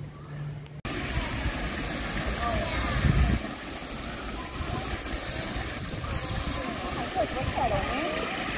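Steady rush of water from a pool's tiled wall waterfall, starting abruptly about a second in, with people's voices around the pool in the background and a brief low rumble about three seconds in.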